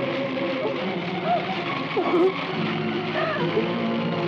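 Dramatic film background music with held tones, with a few short shouted cries rising and falling over it between about one and two and a half seconds in.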